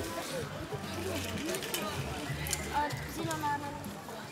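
Faint, indistinct voices of people talking and calling out at a distance, with a few light clicks.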